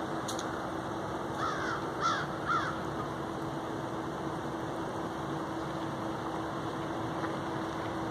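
Crows in a flock overhead cawing: three caws in quick succession about one and a half to two and a half seconds in, over a steady background hum and hiss.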